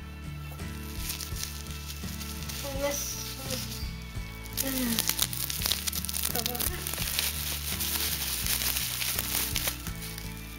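Plastic bubble wrap crinkling as it is pulled by hand off a small clear plastic capsule, louder and busier from about halfway through.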